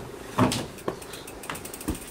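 A mountain bike being loaded through a van's side door, knocking against the van's floor and door frame in a few clunks, the loudest about half a second in.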